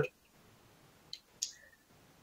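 A man's voice ends a sentence, then a pause of near-silent room tone broken by two short, faint clicks a little over a second in, about a third of a second apart.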